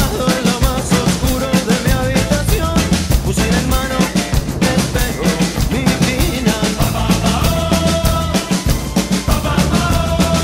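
A Gretsch drum kit played along to a recorded rock song: bass drum, snare and cymbal strikes keep a steady beat under the track's melody.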